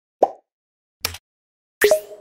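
Three short pop sound effects about a second apart, the last the loudest with a brief ring, as animated buttons pop onto the screen.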